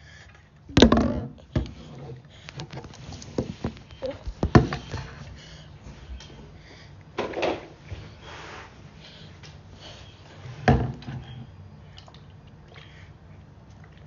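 Several separate knocks and thuds on a hard tabletop as a baby handles a plastic water bottle, the loudest about a second in and near 11 seconds, with brief baby vocal sounds between.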